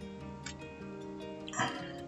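Soft background music: several notes held together, with the chord changing a couple of times.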